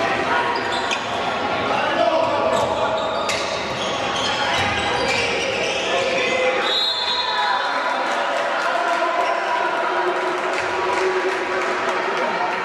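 A handball bouncing on the floor of an indoor court during play, with players' voices echoing in a large sports hall.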